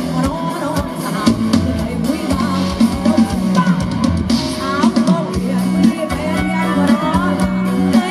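Live band performance: a woman singing a melody into a microphone, backed by drum kit and guitar, amplified through the stage sound system.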